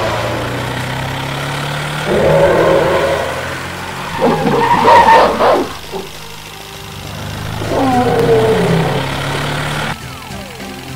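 Sound-effect vehicle engine running steadily, overlaid by three monster roars: one about two seconds in, a louder one around the fifth second, and a falling one near the end.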